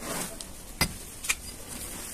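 A pipe knocking against hard chunks of dried red dirt to crush them: two sharp knocks about half a second apart, about a second in, after a brief crumbling rustle at the start.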